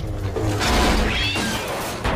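Film-soundtrack battle sound effects: a noisy, rumbling clatter with a short rising squeal about a second in.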